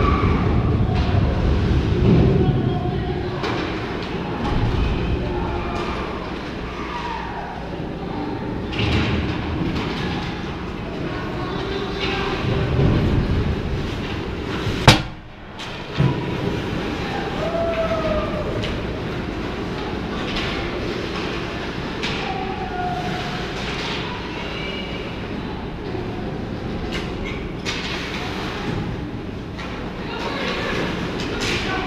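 Ice hockey rink sound heard from the end glass: a steady rumble with skates scraping the ice and players' faint shouts. About halfway through there is a single sharp, loud crack.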